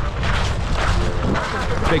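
Storm-force wind buffeting the camera microphone: a loud low rumble broken by irregular gusty blasts.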